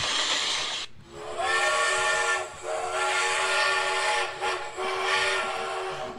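Steam locomotive whistle sound effect: about a second of hissing steam, then the whistle sounds a steady chord of several tones in three long blasts.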